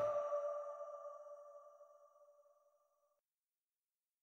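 The hip-hop beat's last note ringing out after the track stops: a steady mid-pitched tone fading away over about two seconds, then silence.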